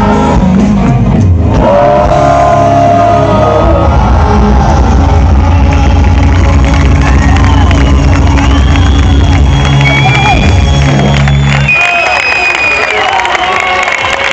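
Live rock band playing loud with a male singer, recorded from the audience. About twelve seconds in the band stops, and the crowd shouts and cheers as the song ends.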